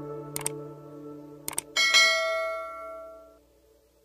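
Subscribe-button animation sound effects: short mouse clicks about half a second in and a quick double click near a second and a half, then a bright bell chime just before two seconds that rings out and fades. Under them, the song's last sustained notes die away.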